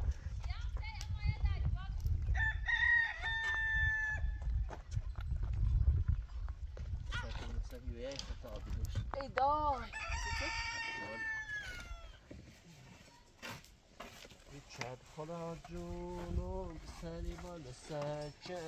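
A rooster crowing twice, each a long call with a held note, the first about two seconds in and the second about nine seconds in.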